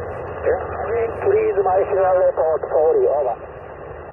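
Ham radio transceiver's speaker receiving a single-sideband voice: a narrow, tinny voice comes through steady static hiss from about half a second in until past the third second.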